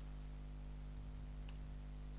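Faint computer keyboard keystrokes as a line of code is typed, one click standing out about a second and a half in, over a steady low electrical hum.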